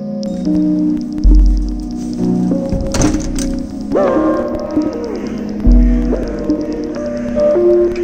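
Improvised electronic music from a modular synthesizer and nuclear-instrumentation test-equipment rig: steady synth tones stepping from note to note, with deep bass booms about a second in and again near six seconds, and a sliding pitch near the middle.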